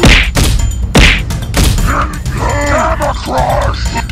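Cartoon fight sound effects: three punch hits in the first two seconds, the first and second the hardest, then a few strained grunts, over a steady low music bed.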